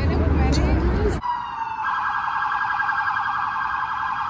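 Crowd noise and wind rumble on the microphone, cut off about a second in by a police car siren. The siren holds a steady tone, then breaks into a fast warble.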